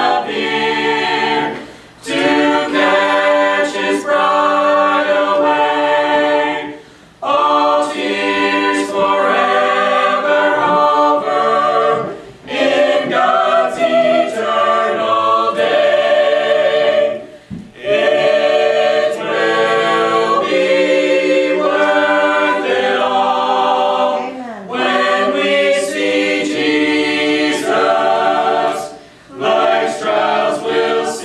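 Mixed a cappella vocal ensemble of men's and women's voices singing a gospel song in parts, unaccompanied. The singing comes in phrases broken by brief breath pauses about every five seconds.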